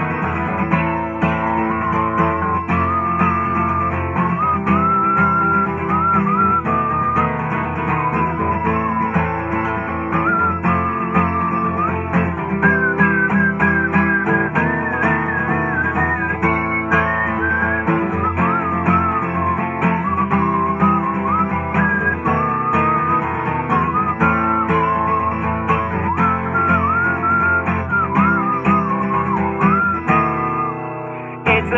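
Acoustic guitar strummed steadily while a man whistles a melody over it, a single high line that climbs and falls.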